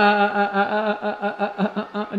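A woman's voice singing a TikTok song. It slides quickly up into a held note that pulses rapidly, about six or seven times a second, sung in fun.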